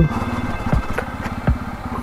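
Bajaj Pulsar N250's single-cylinder engine running at low revs as the motorcycle rolls slowly, with a few knocks as the tyres go over the gaps between concrete slabs.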